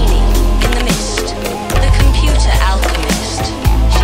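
Electronic synth music in the style of an early-1980s TV theme: synthesizer lines over a deep, sustained bass, with a beat of sharp drum hits.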